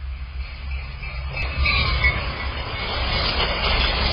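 Train sound effect: the rumbling, hissing noise of a passing train, growing louder as it goes by.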